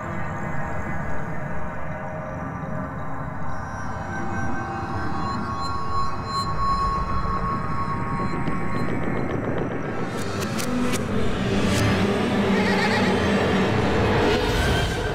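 Dramatic background score of sustained, droning tones that builds and grows fuller toward the end, with a few sharp hits about ten seconds in.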